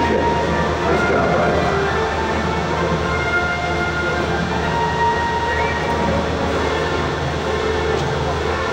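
Steady rumbling background noise of a large indoor show arena: a low hum under a dense wash of indistinct sound, with a few faint short tones.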